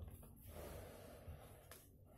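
Faint breathing close to the microphone: a soft, steady breath from about half a second in, against near-silent room hiss.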